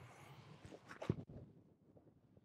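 A golf swing with a 9-iron: faint rustling, then one brief strike about a second in as the club face hits the ball.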